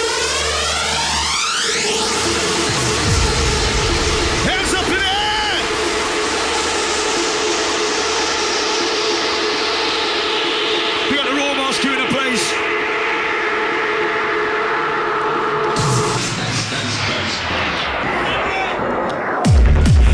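Electronic dance track in a DJ mix going through a breakdown. The deep kick-and-bass beat drops out about three seconds in, leaving sustained synth chords under a long falling sweep. The pounding beat slams back in just before the end.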